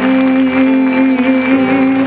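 Slow worship song: a singer holds one long note over sustained chords, and a low bass note comes in about three-quarters of the way through.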